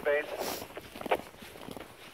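Footsteps in snow: several people walking, a string of uneven steps with a sharper one about a second in. A voice is heard briefly at the very start.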